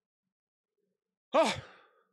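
A man's sigh: one voiced 'oh' that falls in pitch and trails off into breath, about a second and a half in.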